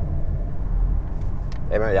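Steady low rumble of road and engine noise inside the cabin of an Audi A5-series coupé cruising.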